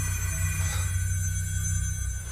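Sustained sound design for a glowing magical flying sword: a steady low drone under a high, glassy ringing shimmer.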